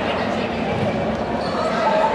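Live sound of an indoor futsal match in an echoing sports hall: players' and spectators' voices calling, with the ball thudding as it is played on the court.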